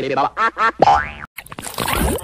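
Cartoon sound effects from the Klasky Csupo 'Splaat' logo animation: warbling, wobbling voice-like sounds and a boing that rises in pitch. It breaks off briefly and gives way to a hissing splatter-like noise near the end.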